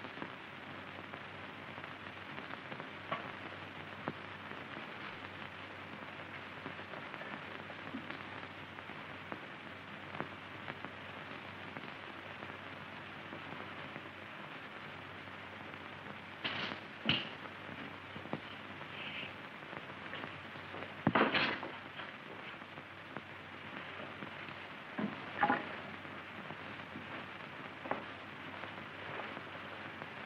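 Steady hiss with faint crackles and clicks from an old optical film soundtrack. A few brief, soft, unidentified noises rise out of it in the second half, the loudest about two-thirds of the way in.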